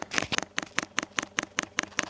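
Webasto DP30 electromagnetic fuel dosing pump ticking rapidly and evenly as the heater's diagnostic software pulses its solenoid at 5 Hz in a fuel delivery test. The pump is judged to be working: it delivers about 62 ml over the 1000 strokes.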